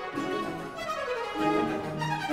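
Baroque string orchestra playing, the violins running down a fast descending scale over about a second and a half, then settling on held lower notes.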